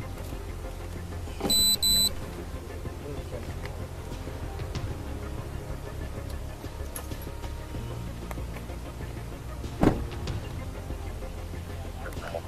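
Steady low rumble of idling vehicles, broken by two short, loud, high-pitched electronic beeps about a second and a half in and a single sharp knock late on.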